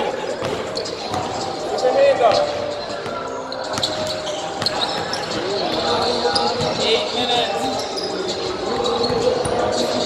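Basketball bouncing on a hardwood gym floor during live play, with repeated short thuds, under the voices of players on the court.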